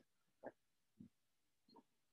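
Near silence: room tone, broken by three faint, short sounds, the first the loudest.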